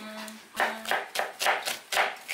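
Kitchen knife slicing an onion on a cutting board: a run of sharp knocks on the board, about three a second, starting about half a second in.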